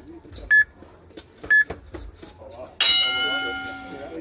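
A boxing round timer gives two short electronic beeps about a second apart, then a bell rings about three seconds in and slowly dies away, marking the end of the round. Sharp slaps of boxing gloves landing on mitts are heard between the beeps.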